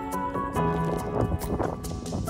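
Background music: held melodic notes over a steady percussive beat.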